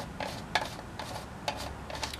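Plastic battery cap on the base of an Etekcity LED camping lantern being twisted open by hand: a few separate sharp clicks, the clearest about half a second in and two close together about a second and a half in.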